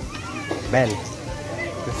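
Voices of people in a busy market street, talking and calling out, with a short high-pitched cry about three-quarters of a second in.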